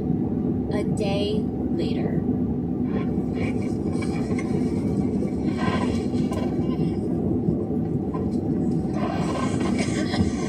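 Steady low road and engine rumble inside a vehicle cruising on a motorway, with brief snatches of a voice from a broadcast playing in the cab.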